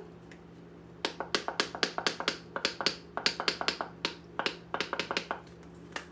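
A spice container of smoked paprika shaken over a bowl of chicken: a quick, irregular run of sharp taps, about five a second, starting about a second in and lasting around four seconds.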